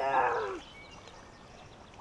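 A young child's short groan, about half a second long, falling steadily in pitch, with no words. It is a sound of strain or discomfort: moments later he complains that his back hurts.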